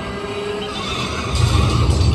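Theme-park ride game audio: music and sound effects, with a deep rumble coming in a little past halfway.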